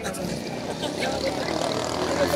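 Faint background voices over a steady low hum.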